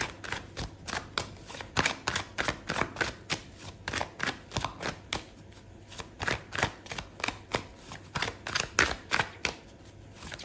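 Oracle cards being shuffled by hand: a quick, irregular run of crisp card clicks and flutters, with a short pause a little past halfway.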